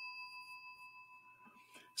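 A chime ringing out and fading away over the first half-second or so, then near silence. The chime is a stream alert sounding as a Super Chat comment comes up on screen.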